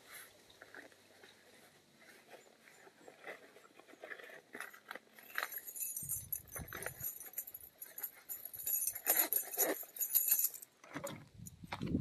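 Rustling and small clicks of things being handled inside a fabric sling bag, sparse at first and getting busier about halfway through with a run of crinkly, scratchy noise.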